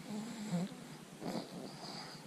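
Quiet vocal noises from a child voicing a puppet: a short, low hum-like sound, then a breathy sound about a second later.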